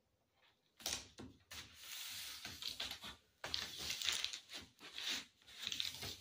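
Plastic sheeting crinkling and duct tape rubbing as hands press and smooth the taped border of a window panel on a bench, starting about a second in and going on in several rustling bursts.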